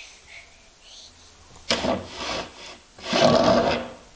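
Rough rubbing and scraping noise in three short bursts in the second half, the last one the longest and loudest.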